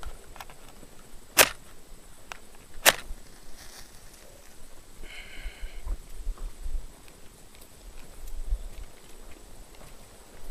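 Two sharp strikes of wooden matches about a second and a half apart, attempts to light a campfire. Low rumble of wind on the microphone later on.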